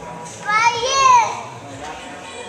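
A spectator's single high-pitched cheering shout, rising and then falling in pitch over about a second, over low hall chatter.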